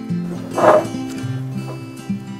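Acoustic guitar background music with plucked, strummed notes. A short, loud burst of noise comes about half a second in and lasts under half a second.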